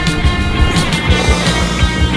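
Rock music with a fast, steady drum beat and sustained guitar tones.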